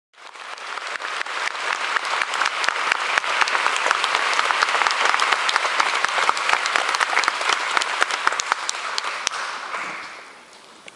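Concert audience applauding, a dense sustained clapping that thins out and fades away near the end.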